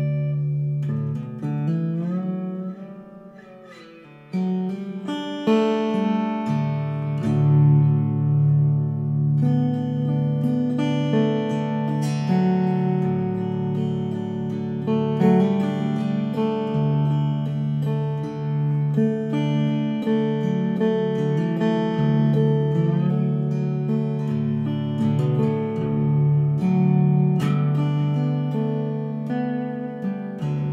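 Koa Style 3 Weissenborn hollow-neck lap slide guitar played with a steel bar: a picked instrumental melody over ringing bass notes, with notes gliding up and down in pitch under the bar. It drops to a quieter, gliding passage about two to four seconds in, then comes back fuller.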